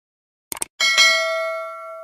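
A subscribe-button sound effect: a quick double mouse click about half a second in, then a notification-bell chime that rings and fades away over the next second and a half.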